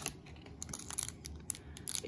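Faint crinkling and rustling of a foil blind-bag packet being handled, with a scatter of small sharp clicks.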